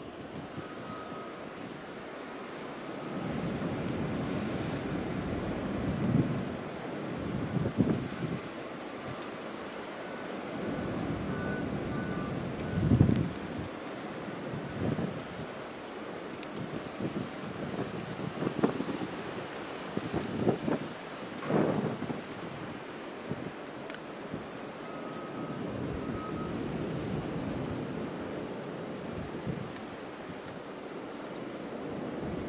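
Blizzard wind blowing steadily, with irregular gusts buffeting the microphone in low booms, the strongest about halfway through.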